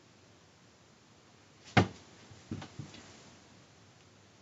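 One sharp click a little under two seconds in, followed by two softer clicks about a second later: a hand on the top of a clear acrylic-cased Raspberry Pi alarm clock, reaching for its controls to set the alarm.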